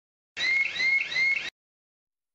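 An electronic alarm-like sound: a high chirp that rises and then levels off, repeated about three times a second for just over a second, starting and stopping abruptly.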